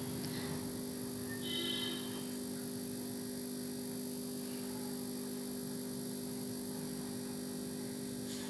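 Low, steady hum with a brief high ringing tone about one and a half seconds in.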